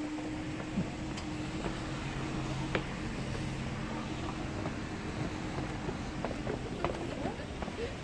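Car engine running at low speed as a car creeps past, a steady low hum that fades out about a second before the end, with wind rumbling on the microphone.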